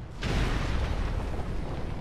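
A sudden deep boom about a quarter second in, running on into loud, sustained rumbling with a heavy bass: a dramatic trailer sound effect laid under the underwater shots.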